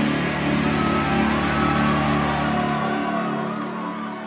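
A live metal band's last chord ringing out on distorted electric guitars and bass, held steady after the final drum hits, then fading away in the last second.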